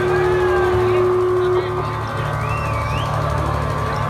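A held keyboard note from a band's sound system that stops about a second and a half in, over a low steady hum and indistinct voices, with a short wavering high tone near the end.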